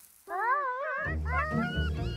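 A cartoon character's wordless, whiny vocal sound, rising and falling in pitch. Background music comes in under it about a second in.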